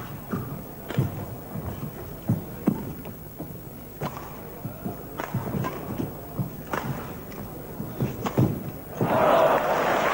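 Badminton rally in an indoor arena: irregular sharp hits of rackets on the shuttlecock, mixed with players' footfalls on the court. About nine seconds in, the crowd breaks into applause as the rally ends.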